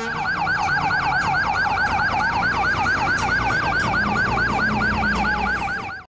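Escort vehicle's siren in a fast yelp, about five falling sweeps a second. A second, steadier tone slides slowly lower from about two seconds in, over a low engine rumble.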